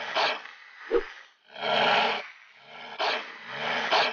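Cartoon sound effects of a dog growling and a cobra hissing at each other, in about four separate bursts.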